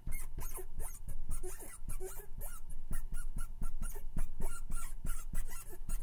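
Writing on a board, the tip squeaking and scratching in quick short strokes, several a second, as a word is written out in letters.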